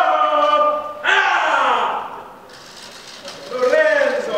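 A man singing loudly solo without accompaniment: a held note, then a loud falling wail about a second in, and another swooping note near the end.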